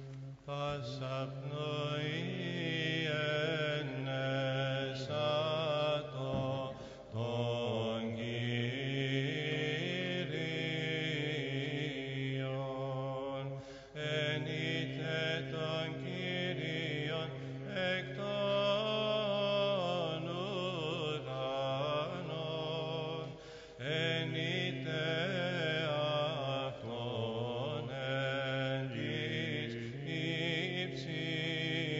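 Byzantine chant: a slow, melismatic sung melody over a steady held drone (ison) that shifts pitch now and then, with two brief breaks, about halfway and near the end.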